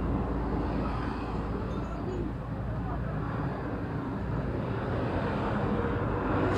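Steady low rumble of background road traffic, with no distinct knocks or tool strikes.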